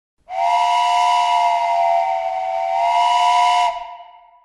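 Steam whistle blowing once for about three and a half seconds: a chord of several high steady tones over a hiss of escaping steam, cutting off and fading out near the end.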